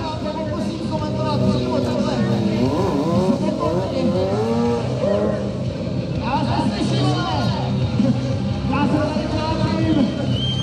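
Sport motorcycle engine revving up and down in repeated rising and falling sweeps as the rider works through stunt tricks, with a voice talking over it.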